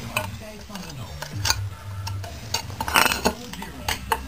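Metal parts clinking and scraping as a spring is twisted into a Puch Maxi moped's front fork tube. There are a few sharp clicks, the loudest about three seconds in.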